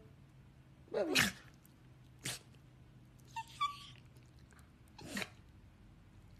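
Small dog vocalizing while it mouths a hand in play: short calls that slide down in pitch, one about a second in and another near the end, with a few brief sharp noises in between.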